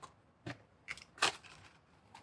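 A small white cardboard box and its paperboard sleeve being handled: four short light taps and knocks, the loudest about a second and a quarter in.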